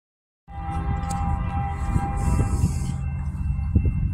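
Distant CSX freight locomotive's air horn sounding a steady chord, held from about half a second in and fading after about three seconds, over a low rumble.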